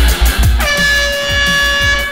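A vehicle horn blast starting about half a second in, dipping in pitch as it starts and then held steady for about a second and a half, over music with a heavy beat. It is sounded at a pedestrian crossing slowly in front of the car.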